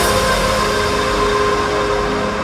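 Breakdown of an electronic dubstep remix: a held synth chord over a noisy wash, with no beat or bass, the hiss at the top slowly fading.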